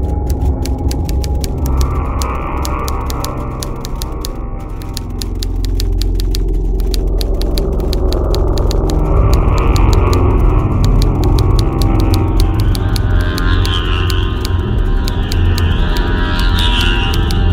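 Dark, droning horror film score with a fast run of typewriter-like key clicks over it. A wavering high tone joins near the end.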